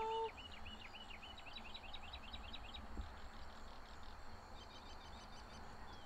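A songbird singing a rapid run of repeated high chirps for a couple of seconds, then a few fainter chirps near the end. The drawn-out end of a woman's called goodbye cuts off just as it begins.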